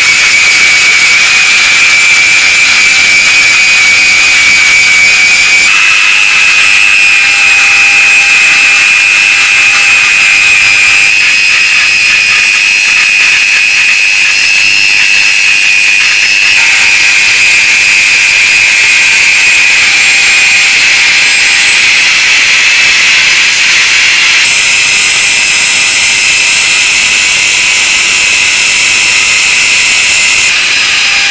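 Handheld electric rotary tool running at high speed with a small abrasive bit grinding and polishing a metal lighter tube: a steady high-pitched whine with hiss, its pitch stepping slightly a few times.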